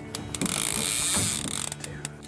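Fishing reel's clicker ratcheting rapidly as line pays out to set a baited shark line down to depth.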